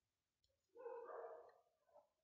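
Near silence, with one faint animal call of under a second about a second in.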